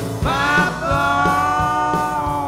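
Country band playing live in an instrumental stretch: a lead melody slides up into long held notes over a steady drum beat and bass.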